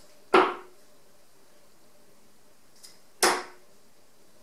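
Two 23 g tungsten steel-tip darts striking a bristle dartboard, about three seconds apart, each a short sharp hit that dies away quickly.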